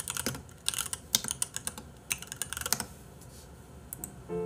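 Computer keyboard typing: a quick, uneven run of keystrokes that stops about three seconds in.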